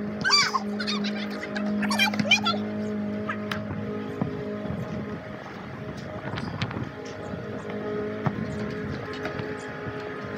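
Background music with steady held notes. Over the first two or three seconds, high, quickly warbling children's voices, and a few sharp knocks later on.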